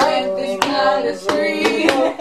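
Women singing a song without instruments, with a beat kept by the hands, about three sharp strokes a second.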